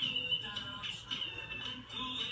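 A beginner's violin: a few soft, tentative bowed notes.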